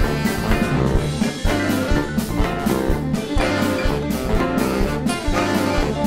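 Live blues band playing an instrumental passage: saxophone and trombone over bass and drum kit, with a steady swinging beat.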